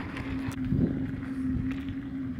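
Aircraft tow tractor's engine running steadily with an even hum over a low rumble.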